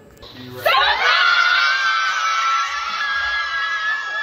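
A group of people screaming together in excitement: a brief near-quiet, then about a second in a long, loud, high-pitched shriek of several voices at once that holds on.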